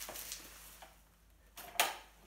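Light metallic clicks of a wheelchair's swing-away footrest being handled and unlatched, with one sharp click near the end.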